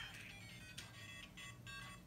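LEGO Mario interactive figure's small built-in speaker playing its electronic course music: a faint tune of short, high beeping notes.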